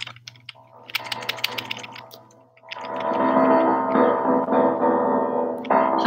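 Small electronic keyboard playing: a few clicks and soft notes in the first two seconds, then sustained chords from about three seconds in.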